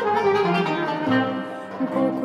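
Live Turkish classical music in makam nihavent: an instrumental passage of plucked strings and held notes between sung phrases.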